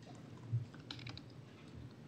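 Faint typing on a laptop keyboard: a short run of soft clicks about a second in, just after a soft low thump.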